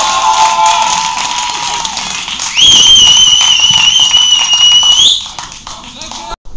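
Loud shouting and cheering at a goal, then a single long, high whistle blast of about two and a half seconds that holds steady and cuts off, over scattered claps.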